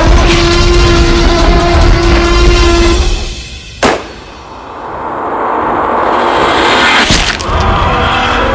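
Film sound effects over dramatic music: a deep T-rex roar for the first three seconds, a single sharp rifle shot just before four seconds in, then a rising swell and a second sharp crack about seven seconds in.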